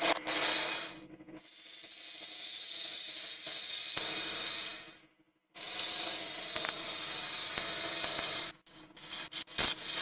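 A gouge cutting a wooden blank spinning on a wood lathe between centres: a steady cutting sound over the lathe's low hum. It breaks off briefly about a second in and again around the middle, and near the end turns into short scraping ticks as the tool makes lighter passes.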